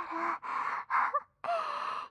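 A woman's breathy gasps, three long breaths in a row, each with a faint voiced edge.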